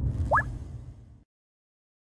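Logo-transition sound effect: a low rumble with one quick upward-gliding blip, like a plop, about a third of a second in, cutting off suddenly about a second later.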